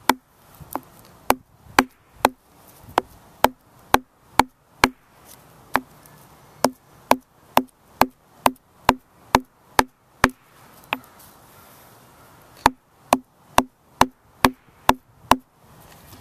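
A round hand-held stone pounding deer sinew against a larger stone, a sharp stone-on-stone knock about twice a second. A break of about two seconds comes late on before a last run of blows. The pounding flattens the sinew and separates it into its inner fibres.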